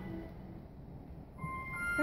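Soft instrumental accompaniment for the song: a held chord fades away within the first half second, then new sustained notes enter about one and a half seconds in, leading into the sung verse.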